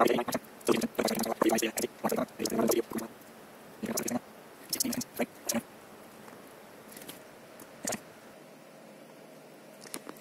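A man's voice, indistinct and not picked out as words, in short phrases during the first few seconds and again briefly mid-way, over a low room hum. The second half is quieter, with a couple of faint clicks.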